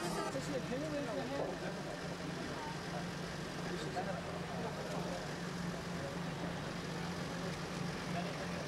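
An engine idling steadily, a low, slightly pulsing hum, with faint voices in the background during the first couple of seconds.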